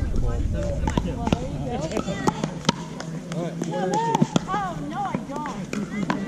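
Pickleball paddles hitting the plastic ball: a quick, irregular run of sharp pocks from play on the courts, mixed with people's voices talking in the background.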